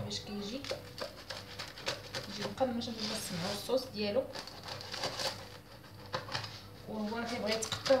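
A knife cutting through the baked crust of a stuffed flatbread on a wooden board, with scratchy scraping and small clicks, under a woman's soft intermittent speech.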